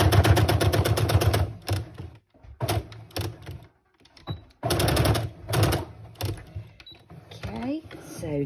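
Brother domestic sewing machine stitching a fabric apron tie down: a fast, even run of stitches that stops about two seconds in, then a few shorter runs, the longest about five seconds in.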